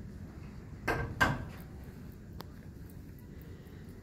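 Two short knocks about a third of a second apart, about a second in, followed by a fainter click, over a steady low room hum.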